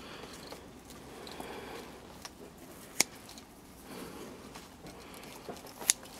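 A faded hyacinth flower stalk being cut: faint rustling of stems and leaves, with two sharp snips, about three seconds in and again near the end.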